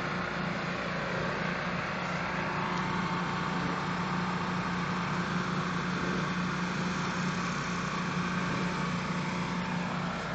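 Pressure washer running a rotary flat surface cleaner over wet concrete: a steady, even drone with a constant hiss of water spraying from the spinning bar under the cleaner's hood.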